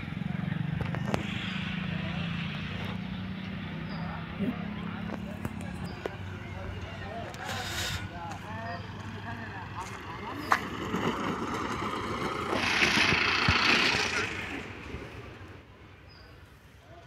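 Motorcycle running as it approaches along the road and passes by, its noise swelling to its loudest about thirteen seconds in and then fading away.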